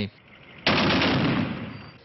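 Burst of rapid automatic gunfire that starts suddenly about two-thirds of a second in and dies away over the next second.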